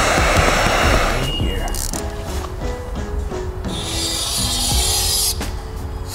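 A handheld heat gun blows for about the first second, heating window tint film on a car door glass to make it stick, then cuts off. Background music with held notes carries on after it, with a short hiss partway through.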